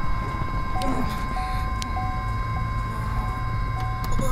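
A low steady rumble, like a vehicle's engine idling, under soft held tones of background music with a short note repeating about every half second.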